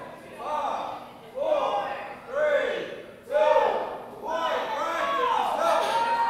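Men shouting encouragement in a gym, loud, high-pitched calls repeated about once a second, with a single thud a little after three seconds.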